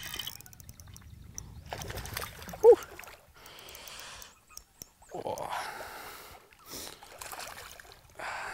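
Hooked smallmouth bass splashing and swirling at the surface beside the boat as it is reeled in, in irregular bursts, the strongest a little after halfway.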